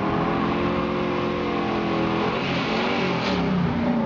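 A 1969 Chevrolet Camaro accelerating hard up the street and past, its engine note held high, dipping and climbing again about two and a half seconds in, then falling away near the end.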